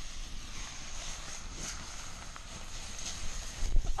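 Campfire burning: a steady crackle and hiss with a few faint pops, over a low rumble and a thin steady high note.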